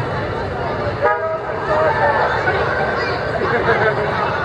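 A short horn toot about a second in, over the chatter of a street crowd.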